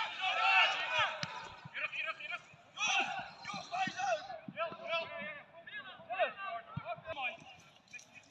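Shouting voices of players and spectators at a football match, calls coming in short bursts across the pitch, with a few faint thuds.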